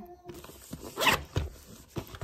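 Knit fabric rustling and brushing close to the microphone as a sleeve and hand move right by it: short scraping swishes, the loudest about a second in.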